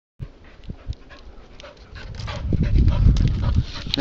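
A puppy panting, with a few sharp clicks in the first second. From about halfway a louder rumbling, knocking noise builds up and becomes the loudest sound.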